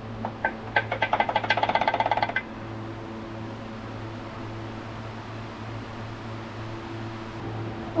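Rapid metallic clatter, about ten knocks a second for roughly two seconds, as a connecting rod of an OM352 diesel is rocked by hand on its crankshaft journal with the oil pan off: the knocking of play in a worn rod bearing. After that only a steady low hum is left.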